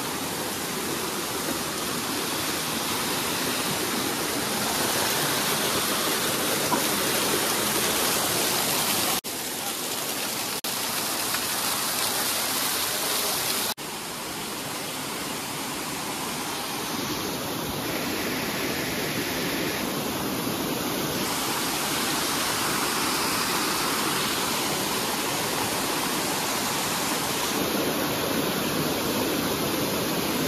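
A waterfall cascades down a rock face into a shallow stream, making a steady rush of water. The sound briefly drops away twice, about a third of the way and about halfway through.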